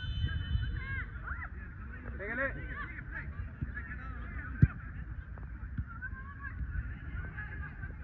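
Distant shouted calls from players on a soccer field, heard about a second and two and a half seconds in, over a steady wind rumble on the microphone. A single sharp thud of a soccer ball being kicked comes about four and a half seconds in.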